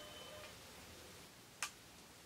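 A single sharp click about a second and a half in, over a faint steady hiss.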